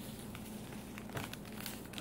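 Small plastic packet crinkling faintly as the last of the crystal-growing powder is shaken out of it, with light rustles and ticks growing more frequent in the second half.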